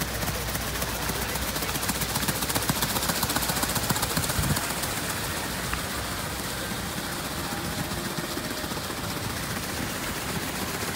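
Water cascading steadily over the edge of a long ornamental pool into a shallow channel below: a dense, continuous splashing, a little louder for a couple of seconds near the middle.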